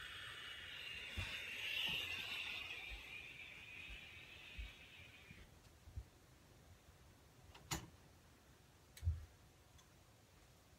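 A steady hiss lasting about six seconds that cuts off suddenly, followed by two sharp knocks, the second the louder.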